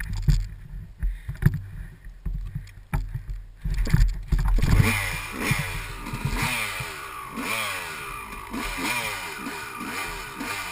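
Off-road dirt bike engine: a low rumble with bumps and knocks at first, then from about five seconds in the engine revs up and down over and over as the bike rides off through the woods.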